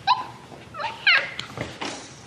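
A toddler crawling on all fours imitating a puppy with a few short, high-pitched yips.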